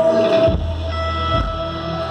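Live rock band music led by electric guitar playing held, sustained notes. About half a second in, a low bass note comes in under it, followed by a couple of deep thuds.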